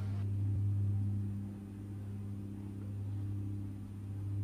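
Steady low electrical hum in the broadcast audio feed, with a faint high-pitched whine above it.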